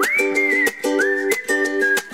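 Upbeat background music: a high lead melody sliding between notes over strummed plucked-string chords with a steady beat.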